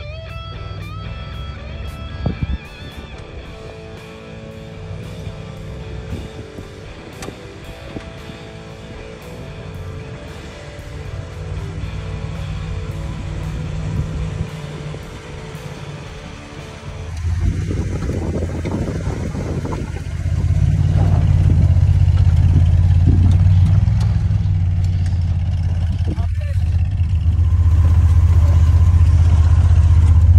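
Background guitar music for roughly the first half, then a Willys CJ2A Jeep's engine running close and low from about 17 seconds in as the Jeep crawls down a steep sandy slope. The engine grows louder toward the end.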